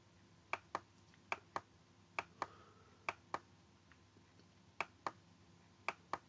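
Computer mouse button clicking: six quick pairs of faint, sharp clicks spread through a few seconds, the two clicks of each pair about a quarter second apart, over low background hiss.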